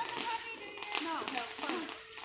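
Footsteps tapping on a paved sidewalk as people walk, with faint voices talking in the background.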